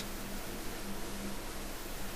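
Steady hiss with a faint low hum. This is the recording's background noise, with no voice or sound effect in it.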